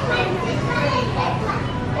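Indistinct chatter of shoppers' voices in a busy supermarket, steady throughout with no clear words.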